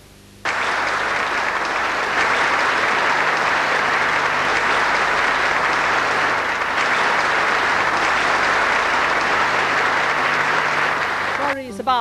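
Audience applauding, breaking out suddenly about half a second in and holding steady, as a song ends.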